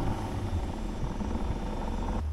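Electric drill running steadily as it turns the drive of a broken cable-driven RV slide-out, retracting the slide by hand in place of its failed motor.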